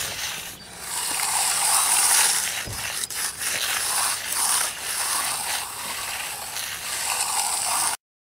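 Steel hand edger scraping along the edge of a freshly poured concrete slab, starting about a second in. It goes in repeated back-and-forth strokes, a gritty rasp of metal on wet concrete.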